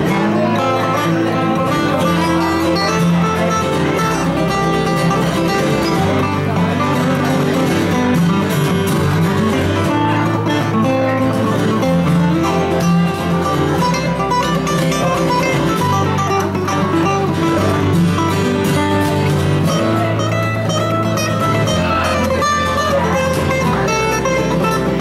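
Instrumental break of a live acoustic country band: strummed acoustic guitars over a bass line that changes note every couple of seconds, with a dobro in the mix.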